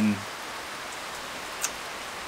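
Steady rain falling, an even hiss, with one small tick about one and a half seconds in.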